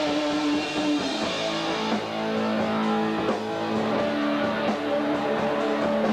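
An amateur rock band playing live in a room: electric guitars ringing out long held notes over the drums.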